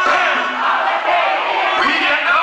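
A rapper shouting into an amplified microphone over a loud, yelling concert crowd, during a break where the band's bass drops out.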